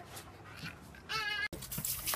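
Little girl giving a brief high-pitched squeal a little over a second in, amid faint rustling, followed by faint clicks.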